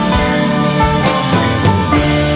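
Psychedelic rock band playing: electric guitars and bass sustaining notes over a drum kit. The drums hit in a steady beat.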